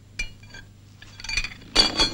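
A few sharp clinks of hard objects with a brief ringing after each: a single one just after the start, a few more about one and a half seconds in, and the loudest clatter near the end.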